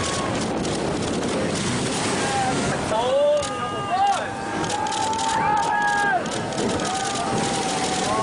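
Steady rush of wind and surf on the microphone, with several people whooping and yelling in long, rising and falling calls from about three seconds in as a surfer rides a huge barrelling wave.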